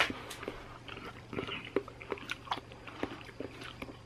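A man chewing a spoonful of soft, sweet food close to the microphone: faint, irregular wet mouth clicks and smacks, over a steady low hum.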